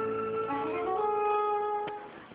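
Instrumental music from a television cartoon soundtrack: held notes, with more notes joining about halfway through. A sharp click near the end.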